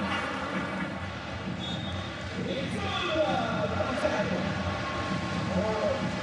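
Crowd noise in a packed basketball arena: a steady din of many voices, with a few louder indistinct voices standing out about halfway through and near the end.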